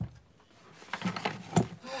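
Rustling and knocks from audio equipment being handled close to the microphone, with a sharp knock about one and a half seconds in.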